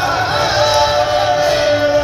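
Music with singing: a melody of long held notes that slide between pitches, over a steady low hum.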